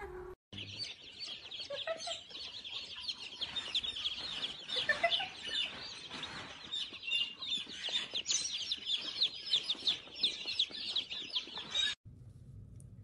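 A crowd of baby chicks peeping without pause, many high, quick chirps overlapping.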